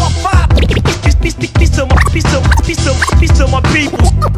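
Hip-hop beat with DJ turntable scratching: quick rising and falling vinyl scratches over heavy bass and drums.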